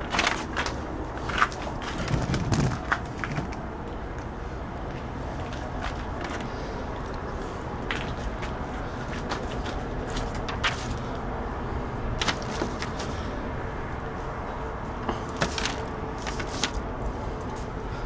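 Scattered light clicks and taps from small parts and a sheet of paper being handled on a workbench, over a steady low background hum.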